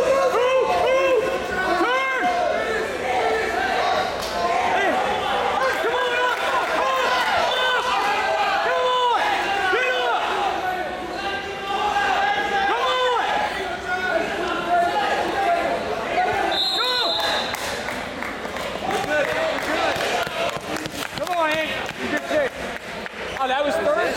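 Wrestling shoes squeaking on the mat again and again as the wrestlers scramble, in a short chirp after chirp, over voices echoing in a gym. A brief high tone sounds about two-thirds of the way through.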